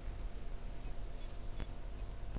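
Faint ambient sound: a low steady hum with a few scattered light clicks.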